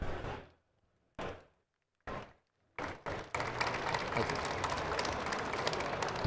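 A few short, separate sounds, then from about three seconds in an audience clapping steadily.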